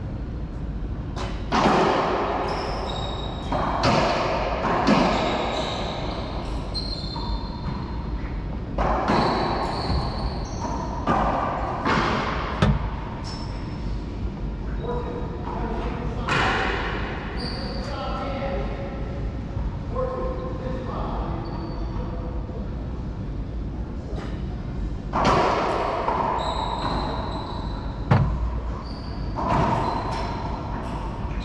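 Doubles racquetball rallies: a hollow rubber ball is struck by racquets and smacks off the walls and floor in bursts of sharp impacts that echo around the enclosed court, with brief sneaker squeaks on the hardwood floor.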